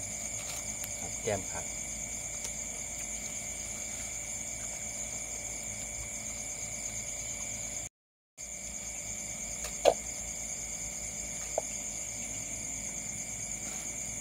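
Crickets trilling steadily at night, two continuous high-pitched tones. The sound cuts out for about half a second just past the middle. A sharp click comes about ten seconds in, and a fainter one shortly after.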